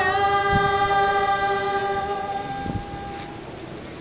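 A group of voices singing together, holding one long final chord that fades out about three seconds in.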